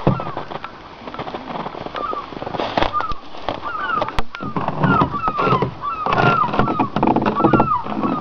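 Birds calling in a run of many short, falling chirps, coming more often in the second half, with some lower calls mixed in.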